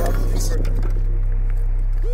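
Hip hop backing music with a sustained deep bass note held through, and a long held tone above it.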